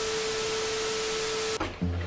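TV-static transition sound effect: a hiss of static with a single steady tone underneath, lasting about a second and a half and then cutting off suddenly.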